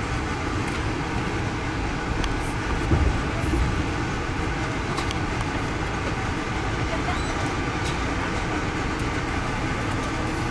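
Amtrak passenger train running, heard from inside the coach: a steady low rumble of wheels on rails, with a few faint clicks and a slightly louder knock about three seconds in.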